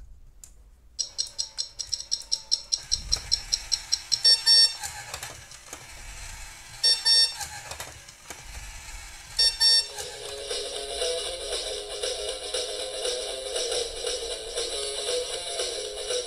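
Electronic alarm-ring sound effect from the Mattel Cozy Cone alarm clock toy's speaker: a rapid ringing for about three seconds starting a second in, then three short rings a few seconds apart, with music under the second half.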